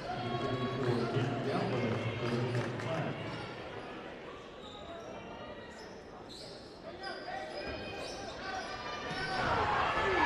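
A basketball bouncing on a hardwood gym floor during play, with players and spectators calling out in the echoing gym. The voices are loudest at the start and again near the end.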